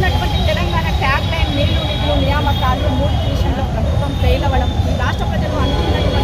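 A woman speaking into press microphones over a loud, steady low rumble.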